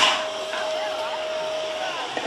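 A BMX start gate's electronic signal sounds one long, steady tone held for nearly two seconds. This is the final tone of the start cadence, on which the gate drops and the riders roll off. A sharp clatter of the gate and bikes is heard right at the start.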